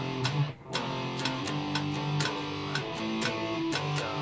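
Electric guitar strumming power chords in a rhythm exercise, with a sharp attack at each stroke. The chords shift pitch every second or so, with a short break about half a second in.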